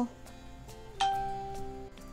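Soft background music with a single chime-like ding about a second in, its tone ringing on and fading over about a second.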